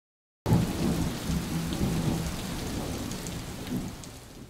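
Thunderstorm: heavy rain hissing steadily with low thunder rumbling beneath it. It starts suddenly about half a second in and eases off slightly toward the end.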